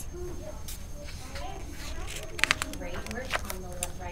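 A page of a hardcover picture book being turned, with a few sharp paper rustles about two and a half seconds in and again near the end. Soft, indistinct speech runs underneath.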